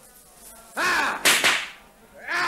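Two fast swishing whooshes in quick succession about a second in, like something whipped through the air with a fast arm swing.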